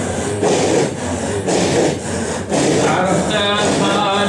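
A circle of men chanting dhikr in loud, rasping rhythmic breaths on a steady beat, the breath-chant of a Sufi hadra. A man's singing voice comes back in near the end.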